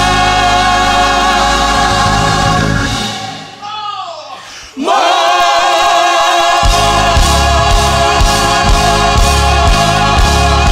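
Gospel choir and praise team singing sustained notes with a band. About three seconds in the music drops away briefly with a falling vocal line, then the voices swell back in, and the band's low end returns a couple of seconds later.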